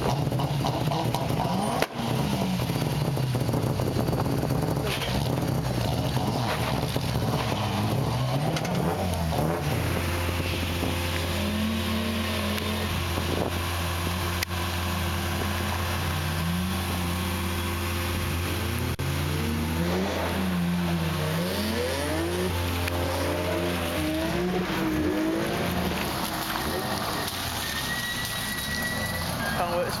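Rally car engines revving hard, the pitch climbing and dropping again and again through gear changes, with a steady low drone underneath for about the middle half.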